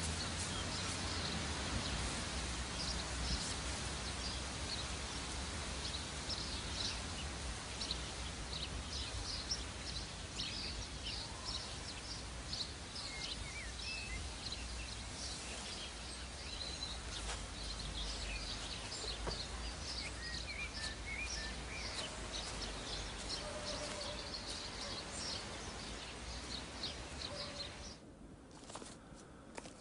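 Outdoor ambience of songbirds chirping and twittering in many short, high calls over a steady background hiss and low rumble.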